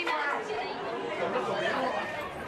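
Several people talking at once, their voices overlapping without any one clear speaker.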